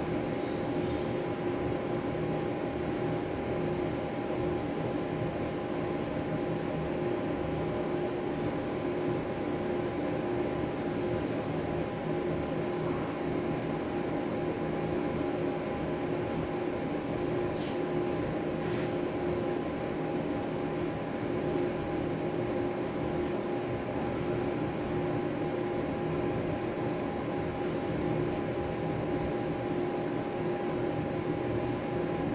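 A steady mechanical hum with a few constant tones running through it, unchanging in level.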